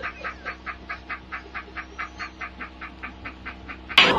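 A man laughing hysterically in rapid, evenly spaced bursts, about five a second.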